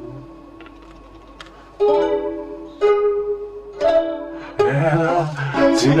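Plucked string accompaniment, in the manner of a ukulele: after a fading chord, three chords are struck about a second apart. A singing voice comes in near the end.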